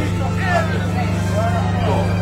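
Voices of people talking nearby at an outdoor market, over a steady low drone.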